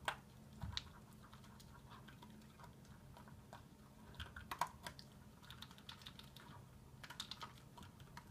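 A smooth miniature dachshund eating from a plastic slow-feeder bowl: faint, irregular clicks and crunches of chewing and of food and teeth knocking against the plastic, coming in clusters. The busiest stretch is about halfway through.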